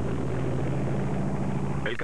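Propeller aircraft engines droning steadily in flight, a low hum of several steady tones; a man's voice begins just before the end.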